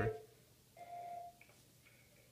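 Alert chime of a school public-address system: one steady tone lasting a little over half a second, then two short, faint higher blips, signalling that an announcement is about to be made.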